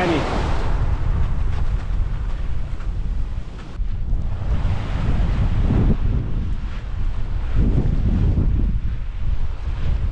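Strong wind buffeting the microphone with a heavy low rumble, over the wash of small waves breaking and foaming on a pebble beach.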